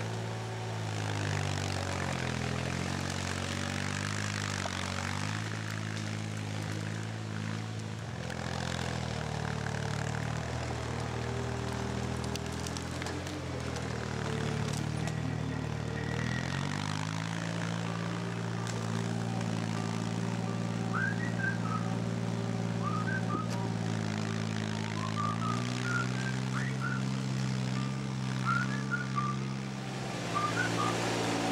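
Diesel engine of a Raup-Trac RT55 tracked forestry skidder running under load, its speed rising and falling several times as the machine works. Birds chirp over it in the second half.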